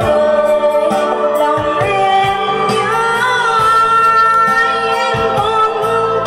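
A woman singing a ballad into a microphone, amplified through large loudspeakers, over instrumental accompaniment with a steady drum beat. She holds a long note with vibrato through the middle.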